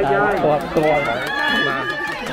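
People talking, several voices at once, one higher voice holding a drawn-out call near the end.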